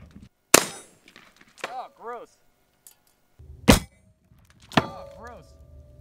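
Sharp cracks of a 7.62x54R PZ exploding rifle round striking its target, each followed by metallic clanging and ringing from the can and the steel plate behind it: one crack about half a second in, and two more near the end.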